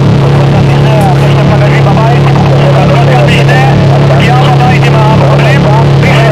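Power electronics noise music: a loud, unbroken distorted drone with a heavy steady low hum, and a warbling, voice-like layer wavering over it.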